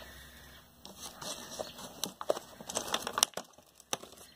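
Faint scattered clicks and crinkles of thin plastic seed-starting trays and clamshell lids being handled. They are thickest in the middle, with one sharper click near the end.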